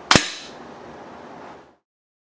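A single shot from an RWS LP8 .177 spring-piston break-barrel air pistol: one sharp crack about a tenth of a second in, dying away within half a second over low room noise. The sound cuts to silence shortly before the end.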